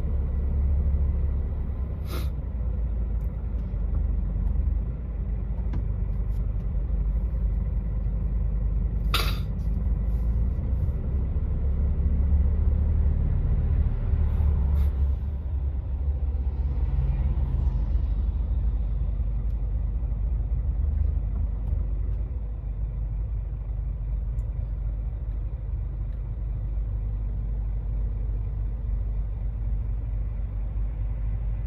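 Steady low rumble of a vehicle idling and creeping forward in stop-and-go traffic, heard from inside the vehicle. Two short sharp clicks come about two and nine seconds in.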